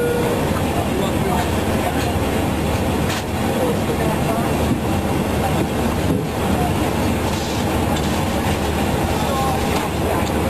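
Airliner cabin noise: a steady drone of engines and rushing air, with faint voices over it.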